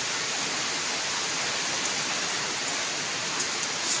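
A steady, even hiss with no pauses or changes.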